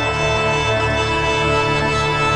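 Mayer EMI MD900 synthesizer playing a pad: a held chord of many steady tones with a full low end, sustained evenly throughout.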